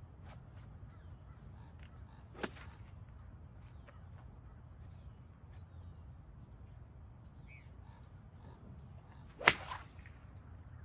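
A golf club swung through the grass and striking the ball, a sharp swish-and-hit about nine and a half seconds in and the loudest sound. A quieter single swish of the club comes about two and a half seconds in.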